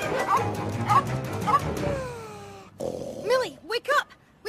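Cartoon dogs barking and snarling over background music, with about three short barks in the first two seconds, followed by a long falling whine that fades out. A boy starts talking near the end.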